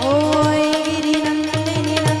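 Live Indian devotional music: a woman sings a long held note that slides up into pitch at the start, over harmonium, with repeated low hand-drum strokes and sharp clicks from small hand cymbals.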